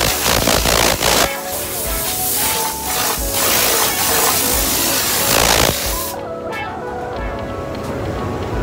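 Compressed-air spray gun hissing as it sprays a panel on a turntable in a spray booth, in two long bursts with a short break just after a second in; the spraying stops about six seconds in. Background music plays throughout.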